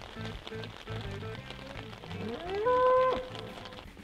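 A cow moos once, about two seconds in: the call rises, holds one pitch for about half a second and then breaks off, over soft background music.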